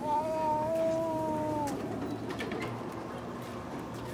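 One steady, pitched tone with overtones, like a held hum or call, lasting nearly two seconds and dipping slightly in pitch as it ends, followed by a few faint clicks.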